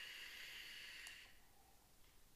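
Faint, steady whistling hiss of a long draw on a vape: air pulled through the airflow of a Kanger Mini tank with a rebuildable nickel coil firing on an HCigar HB DNA40 mod. It stops about a second and a half in.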